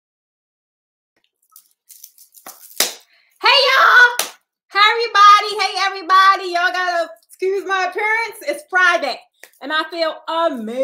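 A woman talking. The first second and a half is silent, then come a few faint clicks and one sharp click before her voice starts.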